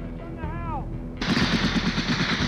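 Rapid automatic gunfire breaking in about a second in, dense and continuous, over a low steady hum; just before it, a brief voice-like cry rising and falling in pitch.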